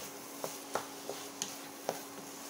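Wooden spatula stirring scrambled egg and sausage in a frying pan: four or five light knocks of the spatula against the pan over a faint sizzle.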